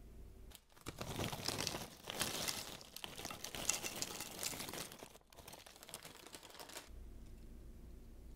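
Kettle-cooked potato chips poured onto a plate, with a dense crinkling and crackling of chips and bag for about four seconds. After a short break it carries on more quietly for a couple of seconds.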